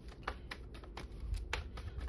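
Tarot cards being shuffled by hand: a quick, irregular run of soft clicks, several a second.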